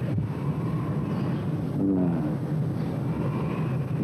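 Steady low rumble of background noise, with a short voiced hesitation from a man about two seconds in.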